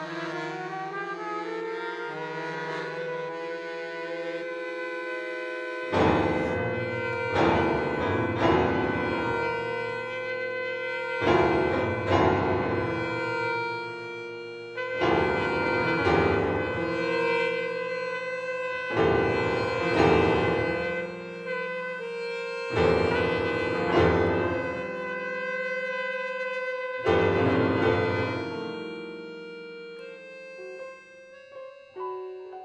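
Free improvised music for trumpet, accordion and grand piano. Held tones glide upward in pitch over the first few seconds. From about six seconds in, high held tones sustain under heavy low-register piano clusters, a group of loud, decaying strikes about every four seconds.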